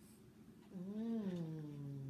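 A long hummed 'mmm' with the mouth closed, rising slightly then falling and holding low, starting shortly before halfway through.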